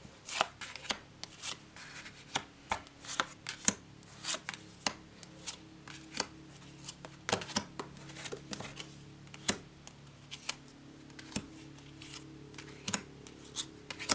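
Glossy, bendy tarot cards being dealt from the deck and laid down on a cloth: a run of irregular light taps and card snaps with soft slides as the cards are placed and pushed into position.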